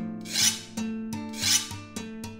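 Soundtrack of plucked acoustic guitar chords with a rasping, scraping sound swelling twice, about a second apart, each lasting about a third of a second.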